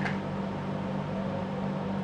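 A steady low machine hum in a small room, holding two even tones throughout with a faint hiss above.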